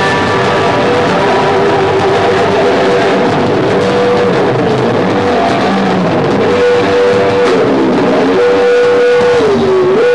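Live instrumental rock band: electric guitar and bass playing through effects pedals, with long held guitar notes that slide down in pitch near the end.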